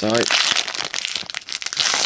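Foil wrapper of a Magic: The Gathering booster pack crinkling continuously as it is pulled open by hand, a dense run of fine crackles.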